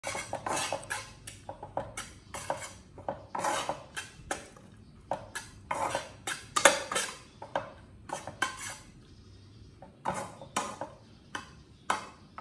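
Metal spatula scraping and knocking against a frying pan as rice is stirred and turned, in quick repeated strokes about two a second that become sparser near the end.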